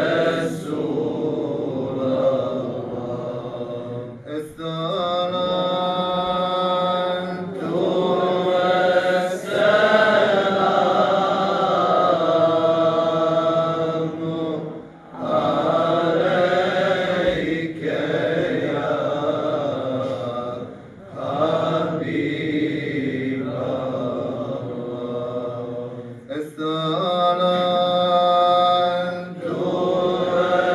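A male voice, an imam, chants a solo Islamic religious recitation into a microphone. The phrases are long, held and richly ornamented, with short breaks for breath every few seconds.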